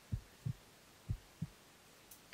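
Heartbeat sound effect: two double beats of low, muffled thumps, the beats of each pair about a third of a second apart and the pairs about a second apart.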